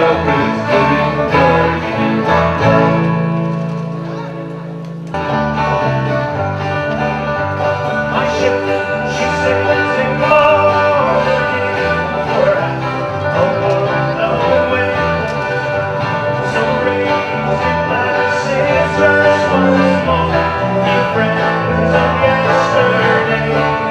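A folk band plays an instrumental passage with banjo picking over strummed guitars, and no singing. About three seconds in the music thins to a held chord, then cuts suddenly back to full playing about five seconds in.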